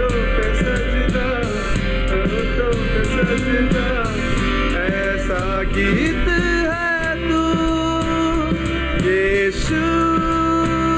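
A live band plays a Hindi Christian worship song: a male voice sings over electric and acoustic guitars, bass guitar and keyboard, with a steady beat. About seven seconds in, the accompaniment thins in the low end under a held sung note.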